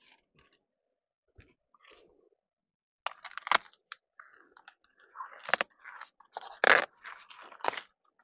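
Corn plant leaves and husks rustling and crackling as hands pull at an ear of corn on the stalk. It starts about three seconds in, with several sharp cracks, the loudest near the end.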